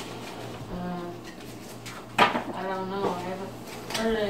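A single sharp knock about halfway through as a phone is set down on a kitchen counter, with soft voices and no clear words before and after it.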